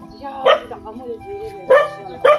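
A dog barking twice, once about half a second in and again near the end.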